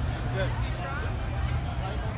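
Low, steady engine rumble of an ambulance and a pickup truck passing slowly on the street, with street chatter over it.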